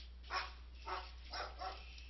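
Four short, sharp animal calls, like yelps or barks, about half a second apart, over a steady low electrical hum.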